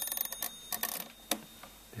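The small bell of a Comptometer Super Totalizer mechanical calculator rings and fades within the first second as the totalizer lever is twisted and the register's number is copied into the totalizer. The mechanism clicks and clatters under it, with one sharper click a little past a second in.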